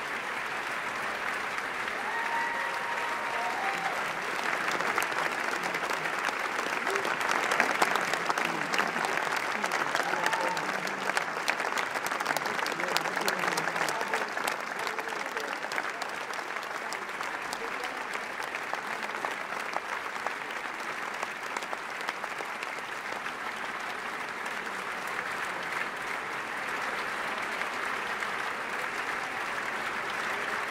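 Large audience in an auditorium applauding without a break: dense, continuous clapping with scattered voices. It swells to its loudest about eight seconds in, then eases a little.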